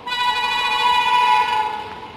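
Air horn of the approaching Duronto Express locomotive sounding one long blast of about two seconds, a rich, steady chord that starts abruptly and sags slightly in pitch as it ends.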